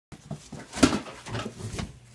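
A pet dog whimpering amid the knocks and rustles of a phone being handled, with the loudest knock a little under a second in.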